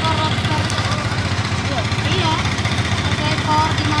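An engine idling steadily, with a fast, even low rumble, while voices talk over it.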